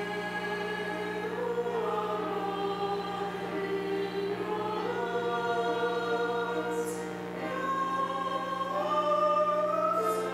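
A church choir singing a psalm refrain in long, held notes that move from pitch to pitch.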